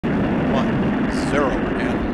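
Space Shuttle main engines starting up on the pad before liftoff: a loud, steady rumble.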